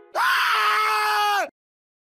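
A voice screaming, held on one pitch for just over a second, then sagging in pitch and cutting off abruptly.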